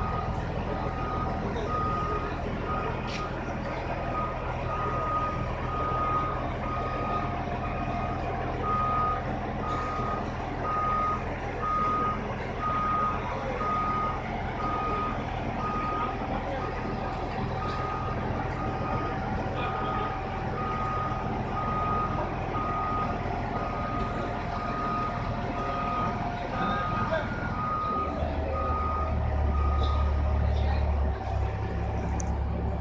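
A crane's warning beeper sounding in a steady, even series of single-tone beeps, about one a second, over the low running of the crane's engine. The engine grows louder near the end as the precast concrete column is lifted.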